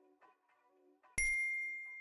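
A single bright bell-like ding about a second in, ringing on and fading away over about a second: the notification-bell chime sound effect of an animated subscribe button.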